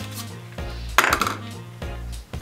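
A 35mm film cassette being taken out of its plastic canister and the canister set down, with a single sharp plastic clack about a second in.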